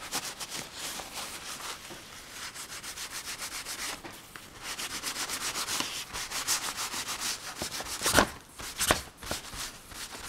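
Tissue rubbing quickly back and forth over a pastel drawing on paper, blending the pastel: a dry scratchy swishing of several short strokes a second. It pauses briefly about four seconds in, and a couple of louder, sharper strokes come near the end.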